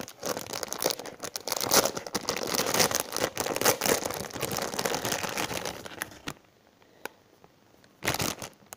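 Clear plastic packaging bag crinkling and rustling as it is opened and handled to get a foam squishy out; the crackling stops about six seconds in.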